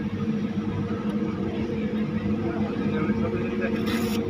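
Single-seater racing car engines idling together in a steady, even hum, with voices chattering in the background.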